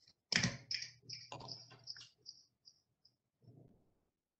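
A knock, then a quick run of taps and clicks on a phone or laptop as it is handled and tapped to switch off one of the cameras on a video call, thinning to a few light ticks.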